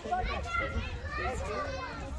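Young children's voices calling out and chattering excitedly, several high-pitched voices overlapping, as in children at play outdoors.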